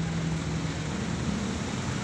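A steady low mechanical hum with an even background hiss, one constant low tone running through unchanged.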